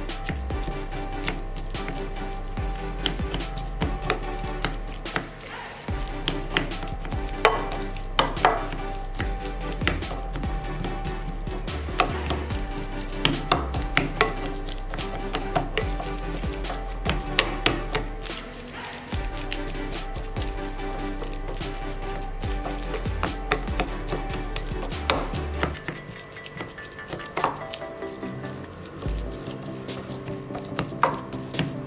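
Wooden spoon mashing boiled potatoes in a glass bowl: irregular taps and knocks of wood on glass with soft squashing, over background music with sustained chords.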